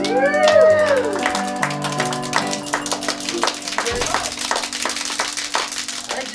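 The last chord of an acoustic bluegrass band (dobro, mandolin, guitar and upright bass) rings out as the song ends. There is a quick rising-and-falling glide in the first second, then scattered hand claps from a few listeners.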